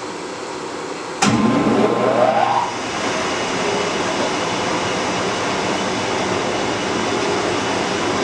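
An electric motor switched on about a second in: a click, then a whine rising in pitch for about a second and a half as it comes up to speed, then running steadily.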